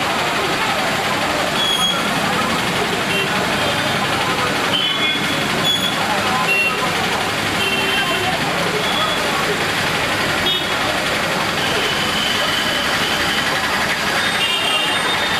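Heavy rain pouring steadily on a town street, mixed with passing vehicle traffic and several short, high beeps.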